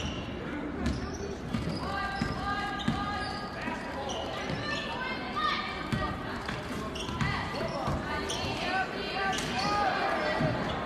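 Basketball being dribbled on a hardwood gym floor, a run of bounces, under the chatter and shouts of players and spectators in a large, echoing gym.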